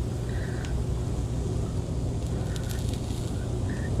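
Steady sizzling and burner noise from a propane Blackstone flat-top griddle with food cooking on it, under a constant low hum, with a few faint clicks.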